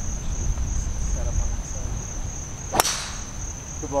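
Golf tee shot: a single sharp crack of the club head striking the ball just under three seconds in, over a steady high-pitched drone of insects.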